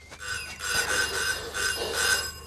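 Telephone bell ringing: a rattling metallic ring with a steady high tone that pulses several times, starting just after the start and growing louder.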